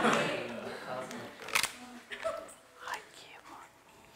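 Faint, quiet voices murmuring in a room, with one sharp click about a second and a half in.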